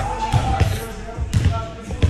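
A basketball bouncing on a hard indoor court floor, a few irregular thuds, with faint voices in the background.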